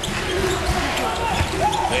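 Basketball being dribbled on the court, a few bounces heard over the steady noise of the arena crowd.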